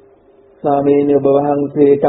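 A Buddhist monk's voice chanting a held, steady-pitched phrase, starting about half a second in, over a faint steady background tone.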